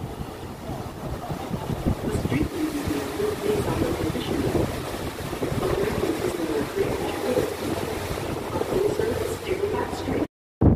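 Steady wind noise and rushing water heard from the open deck of a river sightseeing boat under way, with indistinct voices in the background.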